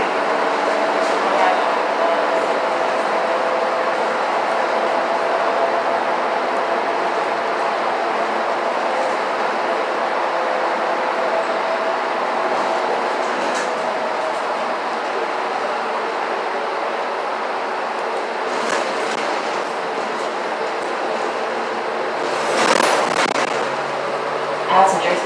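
Steady engine and road noise inside a moving city transit bus, with a faint steady hum. A brief louder rush of noise comes near the end.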